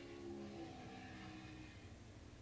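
Faint, distant racing motorcycle engines held at high revs as a group of bikes runs through a corner. The strongest engine notes drop away about half a second in, and fainter engine tones carry on.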